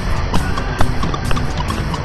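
Wind buffeting the microphone with a heavy low rumble, over background music with short held notes.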